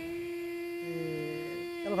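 A man's voice humming a short, low "hmm" in the middle, over a steady pitched drone with many overtones. Speech starts right at the end.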